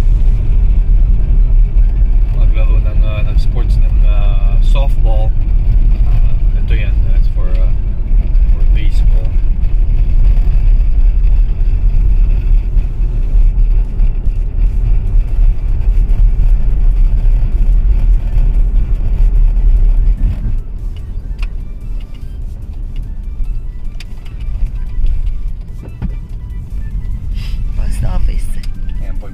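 A car driving, heard from inside the cabin: a heavy low road and engine rumble that drops off sharply about twenty seconds in.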